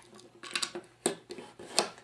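Light switch being fitted by hand into an electrical box: its metal strap and body knock against the box in a few separate sharp clicks.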